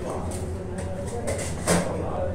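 Restaurant dining-hall noise: background chatter over a steady low hum, with clinks of steel serving ware and a sharp clank near the end, the loudest sound.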